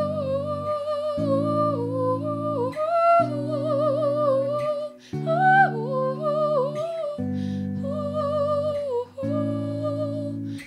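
A woman singing a wordless melody with vibrato over electric guitar chords, each chord struck and held for about two seconds.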